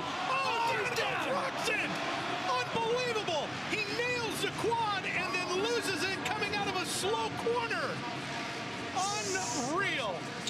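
Supercross motorcycle engines revving up and down over and over as the riders hit the jumps and turns, each rev a short rise and fall in pitch, over a steady wash of crowd noise.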